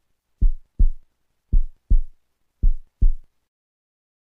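Heartbeat sound effect: three lub-dub pairs of low thumps, about one beat a second, stopping about three seconds in.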